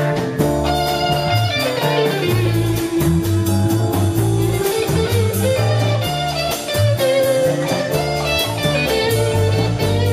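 Live band playing an instrumental blues-rock passage: an electric guitar and keyboard carry a melody of held, bending notes that slide down about two seconds in, over a steady bass line and a drum beat kept on the cymbals.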